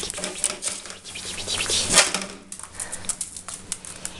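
A ferret scuffling with a fabric plush toy: rustling and flapping of cloth mixed with quick scrabbling clicks, loudest in one burst about two seconds in.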